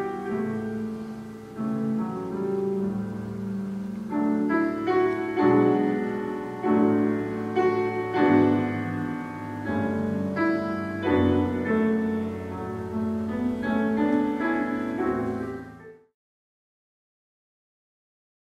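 Classical piano music, notes struck in slow phrases, that cuts off suddenly near the end, leaving silence.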